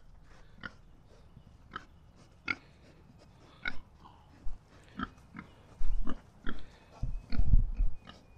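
A boar pig nosing about on bare ground, making short sharp sniffing sounds about a second apart, with two louder low thumps near the end.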